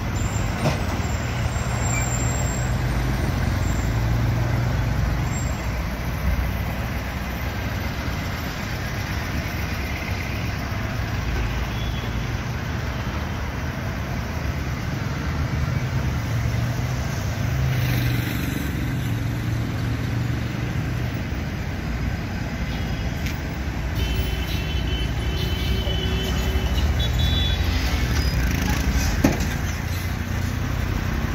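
Road traffic of heavy trucks running and passing close by, a continuous low rumble that swells and eases slightly as vehicles go past.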